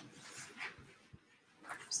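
A man's faint breath, then a single faint click about a second in, and his speech starting near the end.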